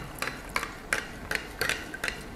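A metal spoon stirring inside a glass measuring jug, knocking against the glass in a series of light, irregular clinks about two a second.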